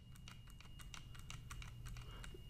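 Faint, rapid clicking from computer controls, several clicks a second, over a low steady hum.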